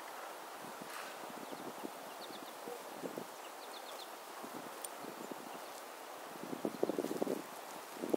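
Quiet outdoor ambience with faint high chips from small songbirds a few times in the first half, then a spell of crackling rustles near the end.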